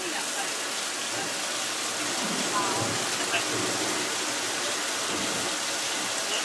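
Hidden overhead sprinklers spraying artificial rain onto a film set, a steady hiss of falling water.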